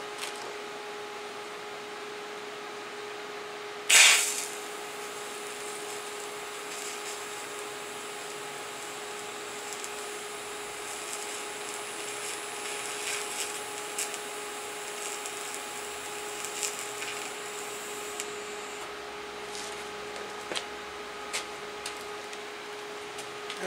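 TIG welder striking an arc on 1 mm sheet steel: a loud, brief burst about four seconds in, then the arc running with a steady high-pitched hiss and occasional crackles for about fourteen seconds of fusion welding, stopping a few seconds before the end. A steady hum runs underneath throughout.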